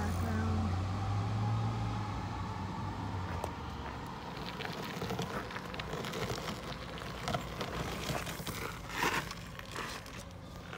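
Footsteps crunching on a gravel path, irregular crackling steps that thicken in the second half with the loudest crunch near the end. In the first three seconds a low, steady engine hum from a vehicle is heard, then fades out.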